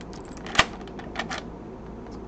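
Key being pulled out of a Schlage JD-60 deadbolt's keyway: one sharp click about half a second in, then a few fainter clicks.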